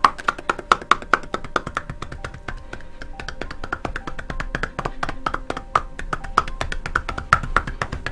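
Cupping massage: cupped hands striking a client's oiled back in a fast, even run of many strokes a second. It makes a hollow clapping that sounds a little like horse's hooves.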